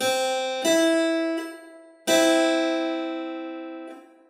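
Keyboard instrument sounding an equal-tempered major third, C and E: the C is struck first and the E added under a second later, then both are struck together about two seconds in and left to die away. Tuned as on a piano, this third is wider than a pure major third.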